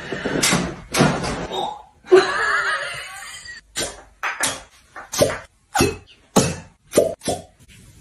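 A brief stretch of voice and noise, then from about four seconds in a quick run of about a dozen sharp pops, each one a glass fire-cupping cup's suction breaking as it is pulled off the skin of the back.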